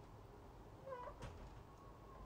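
Quiet kitchen with one brief, faint pitched squeak about a second in, followed by a light click.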